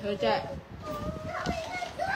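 Speech: voices talking, with no other clear sound standing out.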